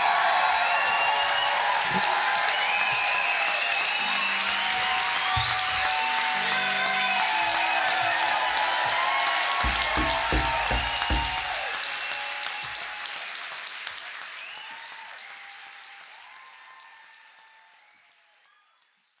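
Live audience applauding and cheering with whoops at the end of a song, with a few low thumps about ten seconds in. The sound then fades out steadily to silence.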